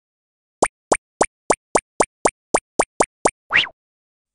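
Cartoon plop sound effects: eleven quick pops in a steady run, about three to four a second, then a longer rising swoop near the end.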